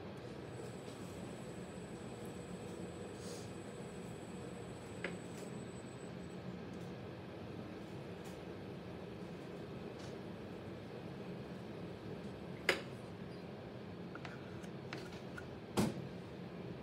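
Electric potter's wheel running with a low steady hum while a trimming tool scrapes excess clay from the foot of a bowl. A few light clicks come through, the loudest about three-quarters of the way through and just before the end.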